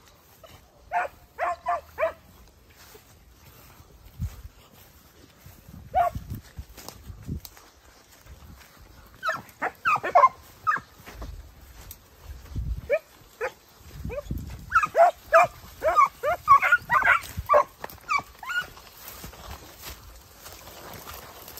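Segugio Italiano hounds giving tongue while working a scent through scrub. A quick run of about four barks comes a second in, then a few scattered barks, then a long run of rapid, excited barks and yelps in the last third.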